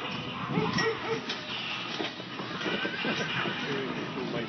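Hoofbeats of a six-horse Percheron draft hitch moving at a fast pace on arena dirt, an irregular clatter of many hooves, with the freight wagon rattling behind.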